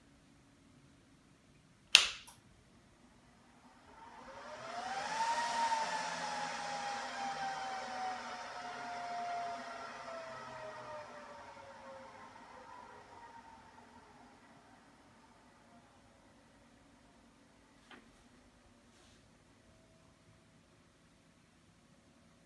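Click of a power strip switch, then a couple of seconds later the Symantec NetBackup 5230 server's power supply fans whine up to speed in about a second and slowly wind back down over about eight seconds: the power supplies getting standby power.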